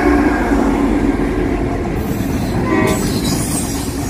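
Diesel locomotives of a CSX freight train passing close, engines running, with the tail of a horn blast fading out in the first half second. A brief squeal comes just under three seconds in, followed by wheel and rail noise as the locomotives give way to the freight cars.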